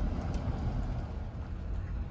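A car driving slowly, giving a steady low rumble of road and wind noise.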